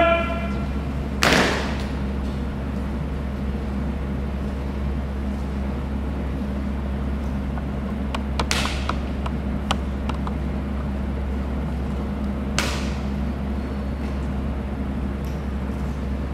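A drill team working rifles and boots in unison: one sharp slap-and-stamp about a second in, then a few softer knocks and clicks later on, each ringing briefly in a large hall.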